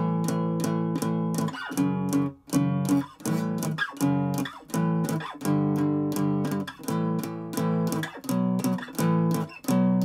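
Taylor acoustic guitar strummed in power chords, playing a rhythmic chord riff. Each chord is stopped short, leaving a brief gap before the next strum.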